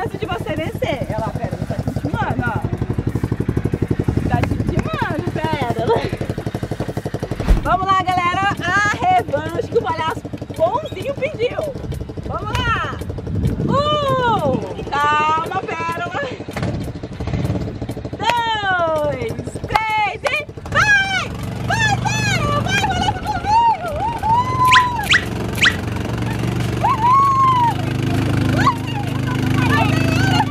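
High-pitched voices whooping and squealing in short calls, over a steady low engine-like hum that grows stronger in the second half.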